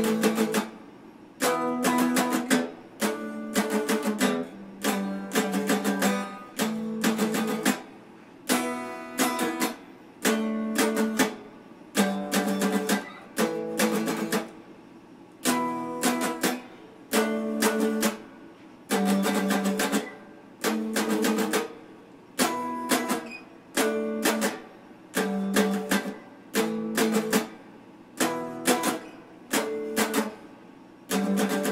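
A clean-toned, red Stratocaster-style electric guitar strummed in a repeating chord pattern: short groups of quick strokes, with brief pauses between them as the chords ring off.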